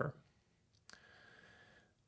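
A pause in speech, close to silence, broken by a single short click about a second in, followed by a faint steady high-pitched hum that stops shortly before the end.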